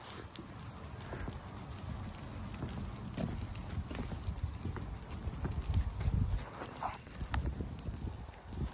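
Dry leaf litter and brush burning with scattered crackles and pops, over a low, gusting rumble of wind.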